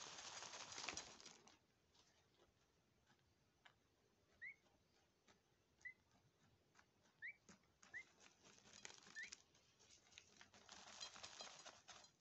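Peahen chick dust bathing in loose soil: a rustling patter of scattered earth and fluttering wings in two bursts, one at the start and one near the end. In between, faint ticks of falling grains and a few short, high, rising peeps.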